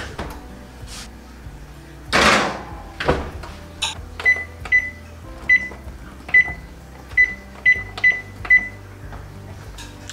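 An oven door shuts with a rushing thud about two seconds in. Then the buttons on the electronic oven control keypad are pressed one after another, about nine short high beeps, to set the timer.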